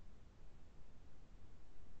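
Faint background noise: a low, uneven rumble with light hiss above it and no distinct events, typical of an open microphone's noise floor.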